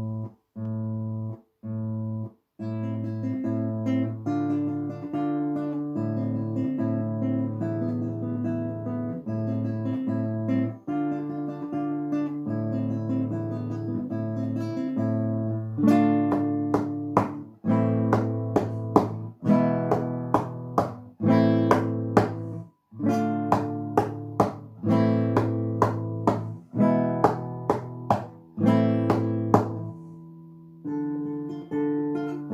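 Acoustic guitar playing a short piece: a few short, detached chords separated by silences, then continuous picked notes over a held bass, and about halfway through louder, sharply struck chords at roughly two a second.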